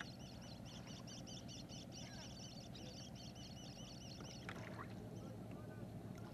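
A bird repeating a quick high chirp about four times a second, stopping about four and a half seconds in, over a low steady outdoor rumble.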